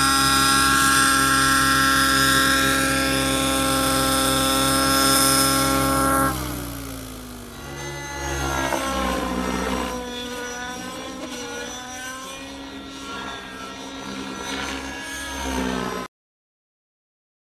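GAUI NX7 radio-controlled helicopter's engine and rotor running at a steady pitch. About six seconds in, the sound drops and the pitch falls away, then rises and falls unevenly as the helicopter manoeuvres.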